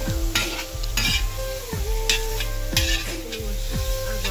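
Pork pieces frying in a wide, flat iron pan over a wood fire, stirred and scraped with a metal ladle. The sizzle swells into hissing bursts about three times as the meat is turned.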